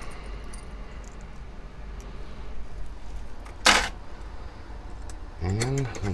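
Quiet room background with one short, sharp noise about two-thirds of the way through; a man starts speaking near the end.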